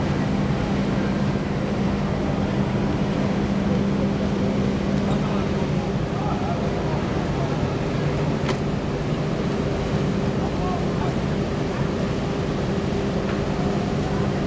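A cruise ship's machinery humming steadily: a low drone with a second, higher steady tone, under the background chatter of passengers on deck.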